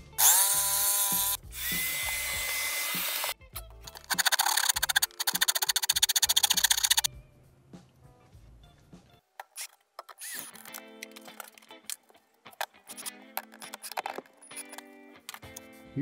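Small power saw spinning up and cutting the last bits of an opening in a particleboard wall panel, in two runs: the first rises in pitch as it starts and stops about three seconds in, the second is a rapid buzz from about four to seven seconds. Soft background music follows.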